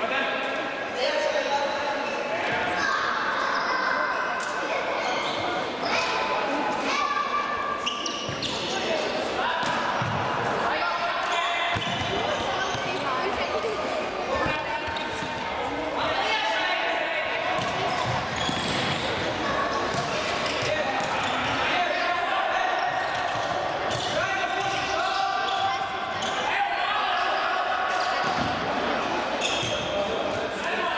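Futsal ball being kicked and bouncing on the hard court of an echoing sports hall, with players shouting to one another.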